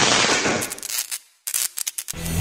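Sound effect for an animated title: a sudden noisy burst that fades away over about a second, then after a short gap a quick run of sharp clicks.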